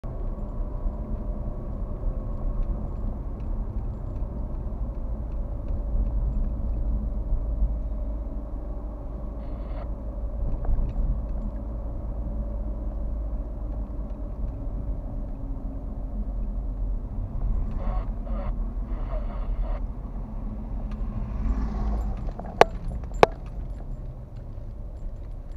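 Car driving, heard from inside the cabin: a steady low road-and-engine rumble that eases off near the end. Two sharp clicks about half a second apart come near the end and are the loudest sounds.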